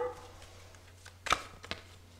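Small deck of Lenormand cards being handled: one sharp card tap a little past a second in, then a couple of lighter clicks.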